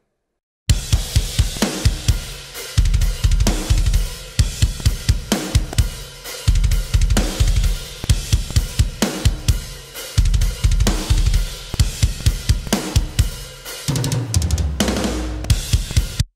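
Soloed metal drum kit from the GetGood Drums Invasion sample library, starting about a second in: stretches of rapid kick-drum strokes, hard snare hits and a constant wash of cymbals. The kit runs through a parallel compression bus with a slight stereo spread, which gives it a punchy sound with sustain on the snare and cymbals.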